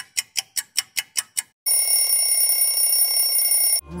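Clock-like ticking, about five ticks a second, stops about a second and a half in. An alarm-clock bell then rings steadily for about two seconds and cuts off suddenly. This is a freeze-dance timer sound effect counting off the freeze.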